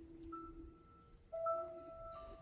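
Grand piano playing a soft, slow passage of a few single high notes held and left ringing, with a louder note struck about one and a half seconds in.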